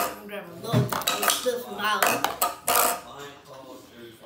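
Metal forks clinking and scraping against a plastic bowl and a pickle pouch, several sharp clinks, with hums and giggles mixed in.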